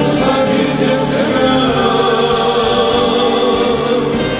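Armenian rabiz-style song: a male voice singing long held notes over a band with drums, electric guitar and accordion.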